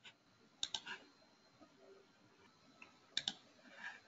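Faint computer mouse button clicks: a quick cluster of about three clicks just under a second in, and another pair a little after three seconds.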